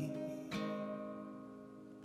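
Background music: an acoustic guitar chord strummed about half a second in, ringing out and fading, in a pause between the singer's lines.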